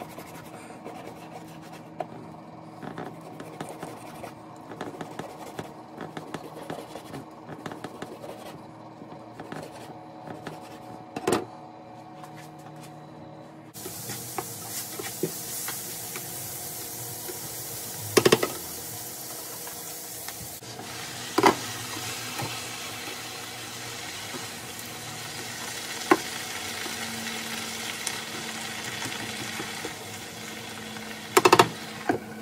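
A knife chopping raw meat on a plastic cutting board, small knocks with one louder knock shortly before the middle. Then onions and meat sizzling in a frying pan, a steady hiss, stirred with a few sharp clanks of the utensil against the pan.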